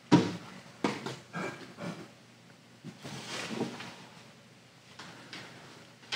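Matted photo prints being swapped on a display stand: a knock right at the start as one board is taken off, then scattered light knocks and soft scrapes of mat board being handled and set in place, dying away in the last two seconds.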